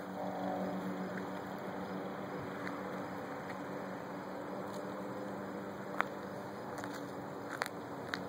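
Quiet outdoor background with a faint, steady low hum, broken by two light clicks about six seconds in and near the end.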